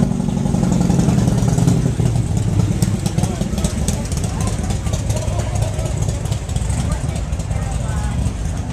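A motorcycle engine running close by, a steady low hum strongest in the first two seconds and then fading, over the chatter of a crowd.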